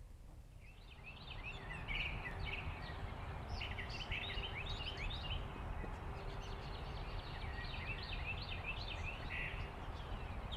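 Many birds calling at once, a chorus of short chirps and trills that starts about a second in and carries on, over a steady low outdoor rumble.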